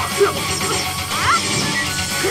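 Staged sword-fight show: sharp clashing and striking sounds of the choreographed fight over steady music played through loudspeakers.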